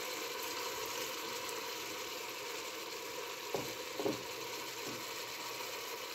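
Chicken pieces sizzling steadily in a hot stainless steel pot, with two brief knocks a little past the middle.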